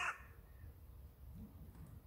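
Quiet outdoor background with a low steady rumble, after a spoken word that ends right at the start.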